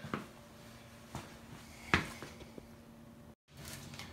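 A few faint, short knocks and clicks, the sharpest about two seconds in, with a brief dead dropout in the sound shortly before the end.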